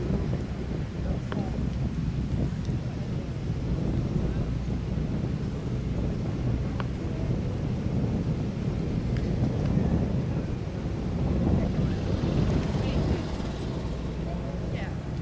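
Wind buffeting the camera microphone, a steady low rumble, with a few faint ticks.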